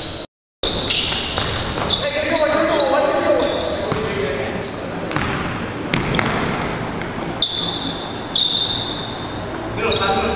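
Live basketball game sound in an echoing gym: a ball bouncing on the hardwood floor, sneakers squeaking in short high chirps, and players' voices calling out. The sound cuts out completely for a moment just after the start.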